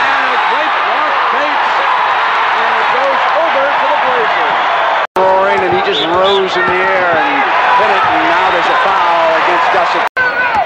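Arena crowd cheering and shouting, a dense din of many voices, cut off by a brief break about five seconds in before the cheering resumes with louder individual shouts.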